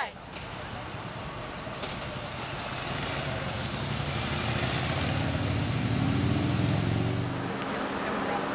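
Motorcade vehicle engines approaching: a low engine hum that builds over several seconds, is loudest about six to seven seconds in, then drops off.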